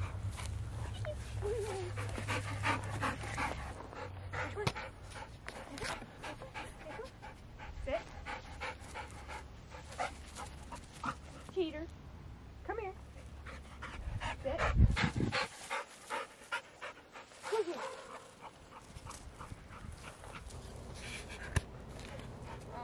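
A dog panting in quick breaths, with a few short whines. There is one loud thump about fifteen seconds in.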